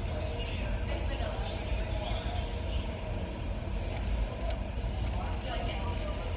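A steady low rumble of outdoor background noise, with faint voices murmuring under it.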